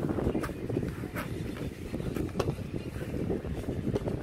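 Close handling noise, a dense rustling rumble, with a few light clicks as a cardboard phone box is handled and opened.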